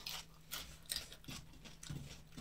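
Close-up eating sounds of someone chewing a mouthful of rice and curry: a string of about five short wet clicks and smacks from the mouth over a faint steady hum.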